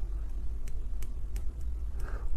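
A low steady rumble, with a few faint clicks about a second apart.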